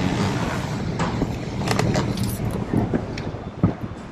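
Road traffic on a city street: a steady rush of passing vehicles that fades near the end, with a few light clicks and knocks from the camera being handled.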